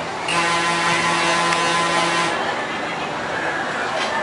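Amusement ride's warning horn sounding one steady tone with a hiss for about two seconds, starting just after the beginning.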